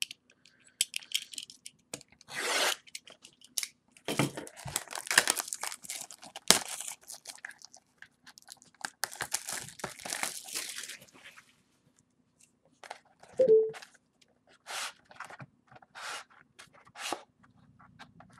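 Plastic shrink-wrap being cut and torn off a trading-card box: irregular crinkling and tearing, busiest in the middle, then scattered short rustles and scrapes as the cardboard box is opened.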